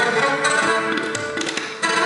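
Indian classical music played live on violin, sitar and tabla together, with crisp tabla strokes over the bowed and plucked melody. The level dips briefly near the end, then comes back with a strong attack.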